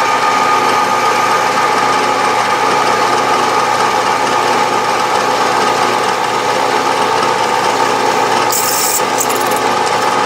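Milling machine spindle running steadily as an eighth-inch twist drill cuts a cross hole into a brass rod, with a brief high hiss near the end.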